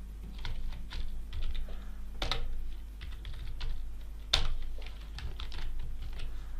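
Computer keyboard typing: a run of irregular keystrokes, with two louder key presses about two seconds and four seconds in, over a low steady hum.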